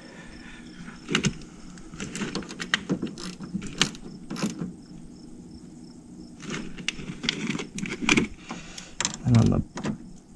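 Irregular small metallic clicks and clinks as wire ring terminals and battery terminal hardware are handled and fastened by hand at a truck battery, hooking up the negative ground feed.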